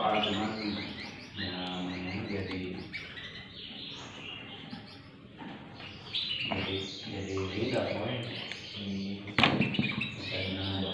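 Many caged canaries chirping and trilling at once, in short overlapping high notes. Near the end there is a single sharp knock.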